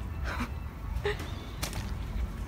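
A few short, hushed breathy sounds from a person, over a steady low rumble.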